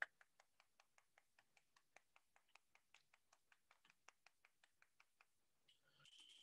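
Faint, rapid taps, about five a second, of a thin tool's edge chopping repeatedly into a block of oil clay held in the hand.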